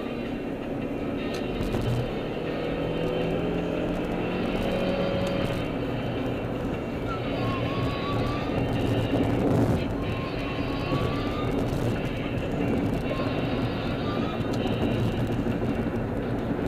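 A car driving on a freeway at steady speed, its road and engine noise continuous, with music playing underneath.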